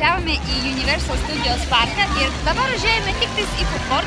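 Crowd chatter: many people talking at once, no single voice clear, over a steady low hum.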